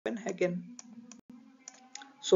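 A brief bit of voice, then a few faint, scattered clicks as a mark is drawn onto the on-screen slide, over a low steady hum.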